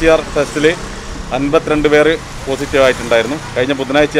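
A person speaking steadily, with a faint low hum underneath.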